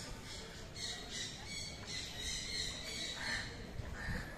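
Birds squawking over and over, short harsh calls about two a second, over a low outdoor rumble.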